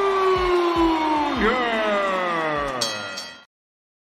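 Electronic transition sound effect over the reel's music: sustained synth tones glide slowly downward in pitch above a thumping beat, with a second falling tone entering partway through. It cuts off to silence about three and a half seconds in.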